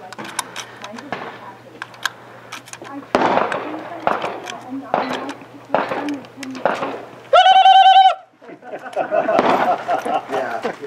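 Brass cartridges clicking as they are pushed through the loading gate of a reproduction Winchester 1866 carbine, with several sharper cracks from about three seconds in. At about seven seconds comes one loud electronic shot-timer beep, lasting just under a second.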